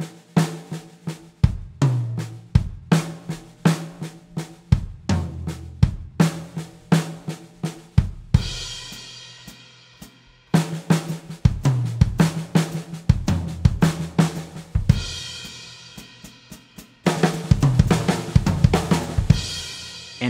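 Sakae Trilogy drum kit playing a fast triplet fill, right-left-right-left-left sticking with kick notes, around the snare and toms. The fill ends twice on a cymbal crash left to ring out, about eight and fifteen seconds in. Denser, louder playing starts again near the end.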